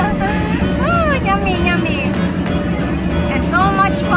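Background music: a melody gliding up and down over a steady low accompaniment and a held tone.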